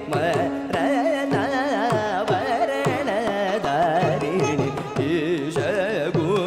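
Carnatic classical music: a male voice sings a heavily ornamented line with oscillating, sliding notes, accompanied by violin and by regular mridangam drum strokes whose low tones fall in pitch.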